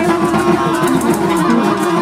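Live free-improvised jazz from a small ensemble of voice, reeds (saxophones and alto clarinet), electric guitar and drum kit playing together. A long held note sits over busy guitar and light cymbal patter.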